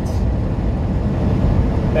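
Steady low rumble inside a semi truck's cab at highway speed, engine and road noise together.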